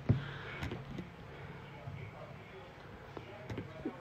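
Quiet room tone with one short, sharp click just after the start and a few faint ticks later on.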